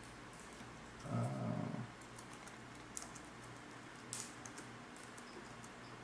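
A few faint clicks of a laptop being worked, the two most distinct about three and four seconds in, over a low steady hum; a drawn-out hesitant 'uh' is voiced a second in.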